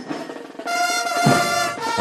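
Scout marching band playing: brass trumpets sound a long held note starting under a second in, over drums.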